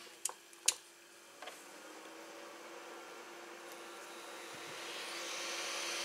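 Small 12 V DC fan starting up and blowing air through the hollowed barrel of a 60 W soldering iron: two clicks in the first second, then a steady hum and air rush that build gradually louder as the fan spins up.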